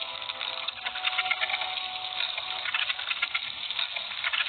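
Ants chirping, amplified from a high-sensitivity microphone: a dense, rapid patter of tiny clicks made by stridulation. It is the call by which ants summon other ants to food.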